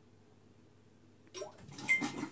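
Near silence, then about 1.3 s in the Samsung WW9000 washing machine starts a rinse-and-spin cycle: a sudden clunk followed by a rushing, clattering noise and a short high beep.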